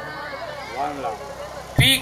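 Speech only: softer voices, then a man's voice over a public-address microphone comes in loudly and suddenly near the end.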